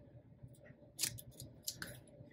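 Faint handling of paper and plastic planner inserts: a short rustle about halfway through and two quick light taps near the end.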